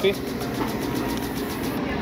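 Steady room noise of an airport terminal concourse, an even hum of ventilation and hall ambience, after a voice trails off at the very start.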